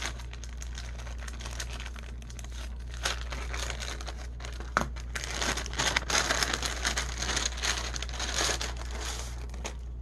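Crinkling of a thin, translucent paper sleeve handled by hand, louder in the second half as a sticker sheet is drawn out of it, with one sharp tick a little before the middle.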